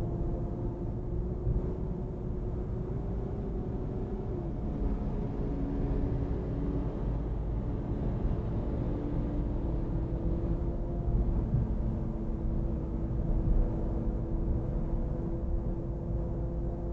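Car driving along a road, heard from inside the cabin: a steady low rumble of engine and tyres with a faint steady hum whose pitch dips about four seconds in.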